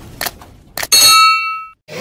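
Subscribe-button animation sound effect: a few quick clicks, then a bright bell ding that rings for most of a second and cuts off suddenly.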